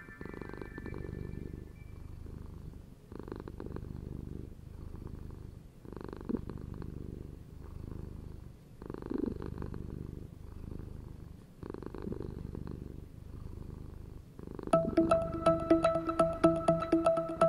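Domestic cat purring close up: a low, rhythmic rumble that pauses for breath about every one and a half seconds.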